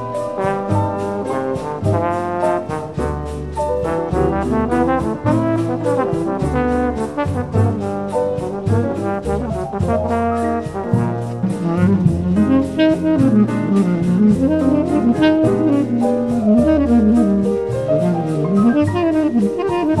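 Brazilian gafieira-style instrumental dance music from a 1950s band recording: a trombone-led brass and saxophone melody over string bass and an even drum-kit beat.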